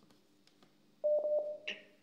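Near silence, then a single steady electronic telephone beep about a second in, lasting under a second, with a couple of faint clicks on it.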